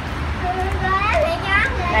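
A young child's high-pitched voice talking, with a steady low rumble behind it.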